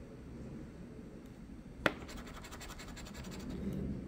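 Coin scratching the coating off a lottery scratch-off ticket, a steady rasp in short rapid strokes, with one sharp click about two seconds in.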